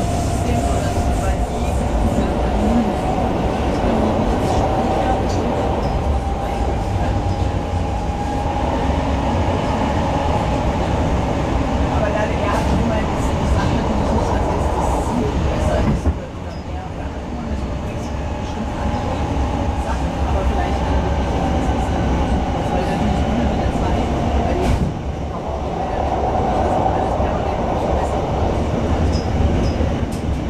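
Hamburg S-Bahn class 472 electric multiple unit running at speed, heard from inside the carriage: a steady rumble of wheels on rail with a faint whine that rises slowly in pitch over the first ten seconds. The noise drops suddenly about sixteen seconds in and again near twenty-five seconds.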